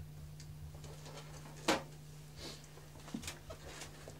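Quiet studio room tone with a steady low hum, broken by a few short breathy sounds of a man laughing softly; the loudest is one sharp breath or click a little before halfway.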